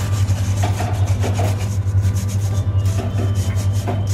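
A wire whisk scraping and rubbing dry flour and cocoa through a stainless steel mesh strainer, in repeated quick strokes. A steady low hum runs underneath.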